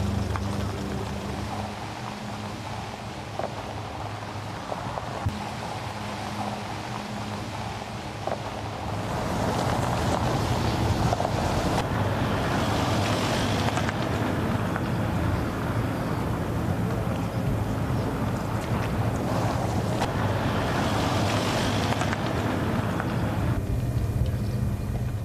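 Outdoor ambience: a steady low vehicle-engine hum with wind noise on the microphone. It grows louder about nine seconds in, and the windy hiss swells twice more, midway and near the end.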